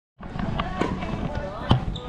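A few sharp knocks and clacks echoing in a wooden-floored sports hall, the loudest just before the end, with voices in between.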